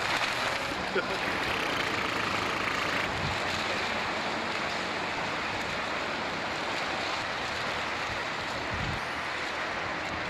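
Steady rushing noise of road traffic crossing a steel truss bridge, with a single sharp click about a second in.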